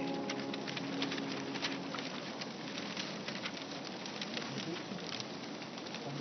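The last sung chord of the choir dies away in the echoing cathedral over the first couple of seconds. Scattered shuffles, footsteps and small knocks follow as clergy and congregation move about, with a long reverberation.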